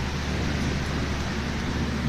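Steady rushing fan noise with a constant low hum underneath.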